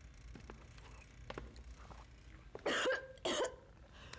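A woman coughing twice in quick succession, short harsh coughs, just after gulping down a glass of strong drink.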